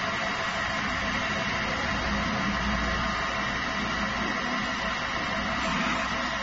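Industrial pass-through conveyor washing and drying machine running: a steady hiss with a constant hum beneath it.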